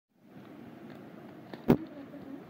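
A single sharp click over a steady low background noise, with a fainter tick just before it, near the end.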